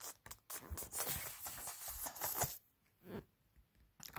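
Handling noise of a phone and a paper picture book: soft rustling and scraping of fabric and paper for about two seconds, then one brief rustle near the end.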